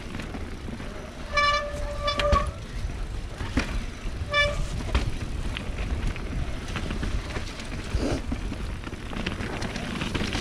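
Mountain bike disc brakes squealing in short steady-pitched bursts: twice in quick succession about a second and a half in, and once more about four and a half seconds in. Under the squeals run the rattle and knocks of the bike over a wet dirt trail. Squealing like this is typical of wet disc brakes.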